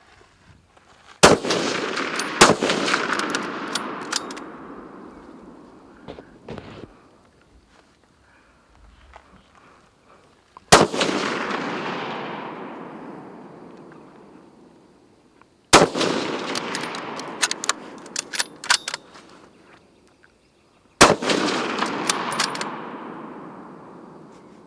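Scoped bolt-action rifles fired single shots: five cracks in all, two about a second apart near the start, then one every five seconds or so. Each shot is followed by a long rolling echo that fades over several seconds, with short sharp clicks after some of the shots.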